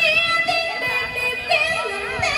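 A woman singing a Vietnamese vọng cổ song into a microphone over backing music, her voice bending through long, wavering notes.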